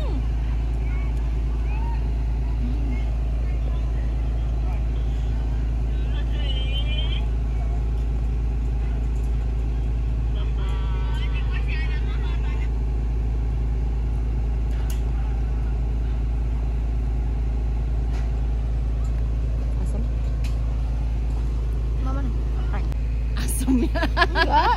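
A steady, unbroken low rumble, the kind given off by distant road traffic, with faint higher wavering sounds about six and again about eleven seconds in.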